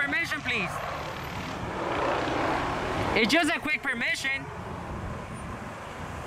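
Road traffic: a vehicle passing, a rushing noise that swells about two seconds in and fades by about three seconds.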